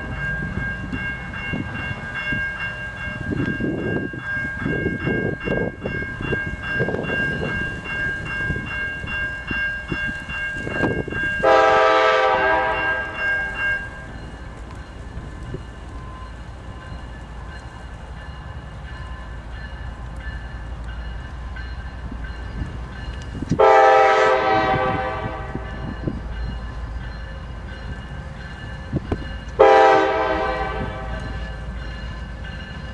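Diesel locomotive's multi-chime air horn blowing long blasts for a grade crossing: one about 11 seconds in, another near 24 seconds and a third starting at the very end, over the low rumble of the locomotive. Between the blasts a crossing bell rings steadily.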